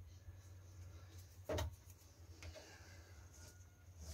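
Quiet room tone with a steady low hum, broken by a single short knock about one and a half seconds in.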